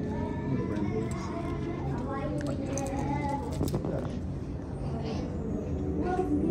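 Indistinct background chatter of several people's voices, steady throughout, with no clear words.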